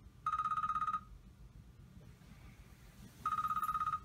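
Electronic alarm going off beside the bed: two bursts of rapid, high-pitched pulsing beeps, each under a second, about three seconds apart.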